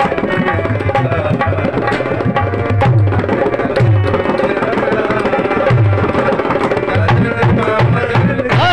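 Dholak barrel drum played by hand in a fast, driving rhythm: quick sharp slaps on the treble head mixed with deep bass strokes from the low head that recur every second or so.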